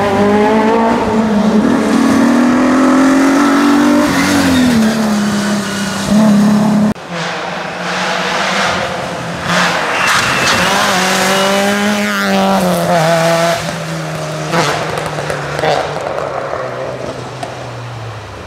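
Two rally cars driven hard, one after the other, engines revving up and falling back through gear changes. There is a break about seven seconds in. In the second part a red Peugeot 106 rally car splashes through standing water on the wet road.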